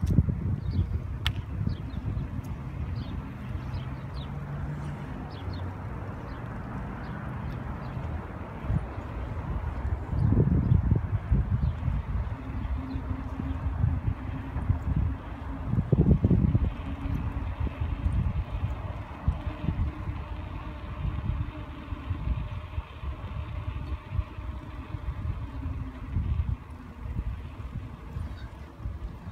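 Wind buffeting the phone's microphone: a fluctuating low rumble throughout, swelling in two stronger gusts about ten and sixteen seconds in.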